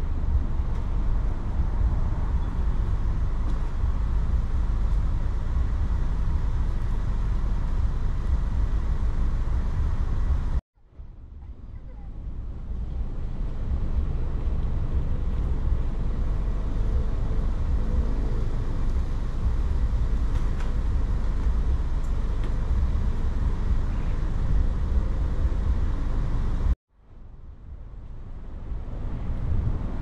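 Steady low rumble of wind buffeting the microphone. It cuts out abruptly twice and swells back in over a few seconds each time.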